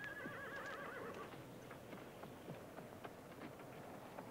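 A horse whinnies: one wavering call, just over a second long, at the start, followed by faint scattered clicks.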